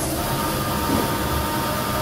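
Lely Astronaut robotic milking unit running its rotating teat-cleaning brushes under a cow, a steady mechanical running noise with a faint thin whine.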